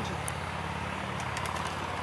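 A steady low mechanical hum, engine-like, over a faint outdoor hiss, with no change through the pause.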